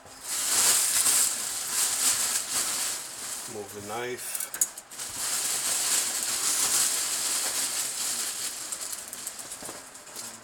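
Plastic bag and cardboard packaging rustling and crinkling as a heavy boxed statue is pulled out of its shipping box. The crinkling is continuous, with a short break near the middle.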